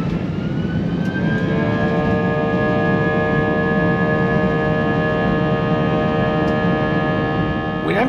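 Airbus A320 jet engines spooling up to takeoff thrust, heard from inside the cabin. A whine rises in pitch over the first second or so, then holds steady over a loud rumble as the plane rolls down the runway.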